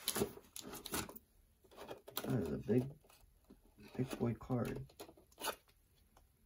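A man muttering to himself in two short indistinct stretches, with a few short clicks and rustles of handling between them.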